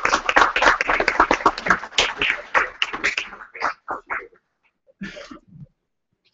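Audience applause: dense clapping that thins to a few scattered claps and stops about four seconds in, followed by one short noise near the end.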